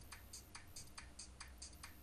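Faint, regular ticking, about three ticks a second, over a low steady hum.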